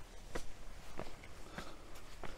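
Footsteps on bare rock, three evenly paced steps about 0.6 s apart.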